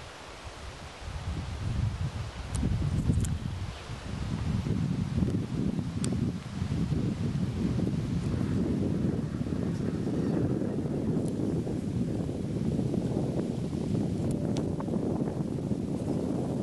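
Wind buffeting the microphone outdoors: a low, gusty rumble that picks up about a second in and keeps going, with a few faint sharp ticks.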